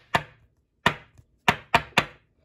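Hard plastic trading-card holders knocking and tapping as cards are worked into them: about five sharp, separate taps at uneven spacing, the last few closer together.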